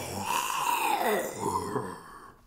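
A person's voice drawn out in a long, growly 'rooaarrr', imitating a bear's roar, trailing off near the end.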